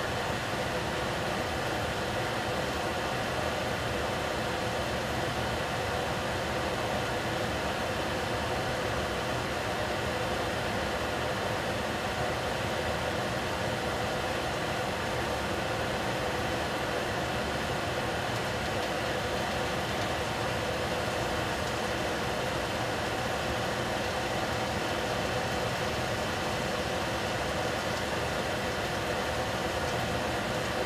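Steady, unchanging noise of a lidded stainless-steel pot cooking on the stove burner, a low rumble under a constant hum.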